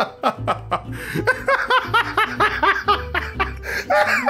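A song with a steady beat and held bass notes, with a man laughing over it in short, evenly repeated laughs.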